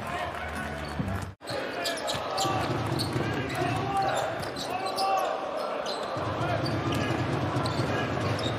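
Basketball bouncing on the hardwood court during play, over arena crowd noise and voices. The sound drops out briefly about a second and a half in.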